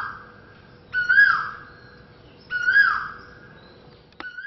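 Asian koel calling: a clear whistled call that rises and then falls, repeated about every second and a half. Two full calls, plus the tail of one at the very start.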